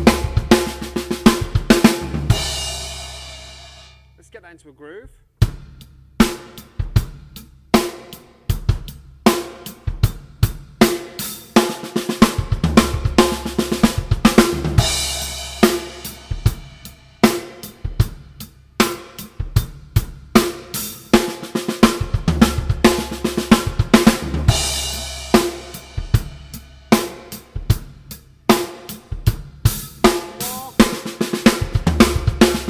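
Acoustic drum kit played at a slow tempo: a fill pattern of six-stroke rolls around the snare and toms, with bass drum kicks in between. A crash cymbal and kick land together three times, about ten seconds apart, and the crash rings out. The first crash fades almost to nothing a few seconds in before the pattern starts again.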